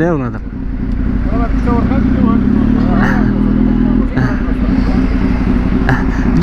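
Motorcycle engine idling steadily, a little louder for a couple of seconds mid-way, with faint voices behind it.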